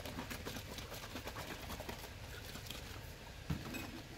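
Water and nutrient solution sloshing inside a plastic gallon jug as it is shaken hard, the air gap making quick irregular splashes and knocks. A single thump comes near the end.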